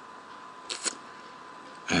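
Two quick clicks of a computer mouse button, close together, against faint room tone with a steady hum.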